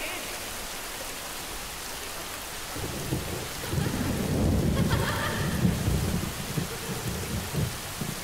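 Steady hiss of heavy rain, joined about three seconds in by a long low rumble of thunder that eases off near the end.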